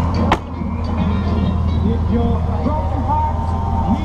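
Touring motorcycle engine idling with a steady low hum, and a sharp click a moment in.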